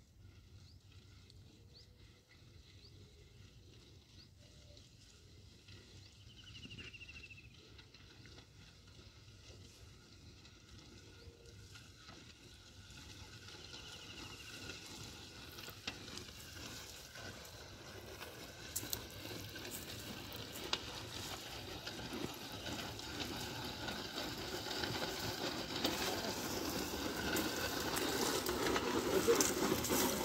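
Dry grass and stalks rustling and crackling as a yoked pair of bullocks drag a wooden plough through them, growing steadily louder as the team comes closer. A short high chirp sounds twice, about a third and half way through.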